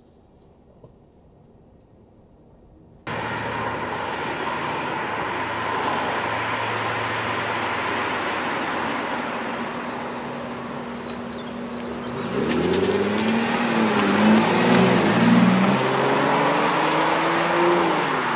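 Aston Martin DB9's 5.9-litre V12 being driven along an open road, heard from the roadside over a steady noisy hiss. In the last six seconds the engine note gets louder and rises and falls in several sweeps as it revs through the gears. The first three seconds are only quiet in-car room tone.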